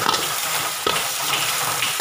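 Onion, garlic, curry leaves and green chillies sizzling in hot oil in a steel pan while a steel spoon stirs chilli powder through the tempering, scraping the pan. Two sharp clinks of spoon on pan, one at the start and one a little under a second in.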